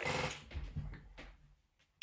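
A man's breathy vocal sound close to the microphone, fading within about half a second, then a faint click and near silence.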